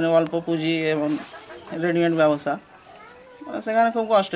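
A young man's voice speaking in three short phrases separated by brief pauses.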